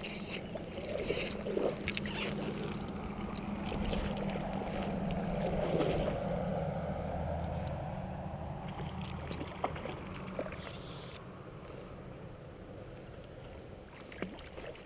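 Water sloshing and lapping close by as a hooked trout is played on a fly rod, swelling about six seconds in and then easing off, with a few sharp clicks.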